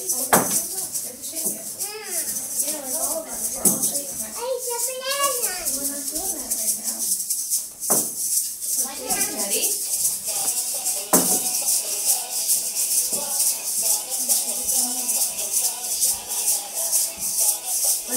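Plastic egg shakers shaken in time to a recorded children's song, a dense rattle running over the music.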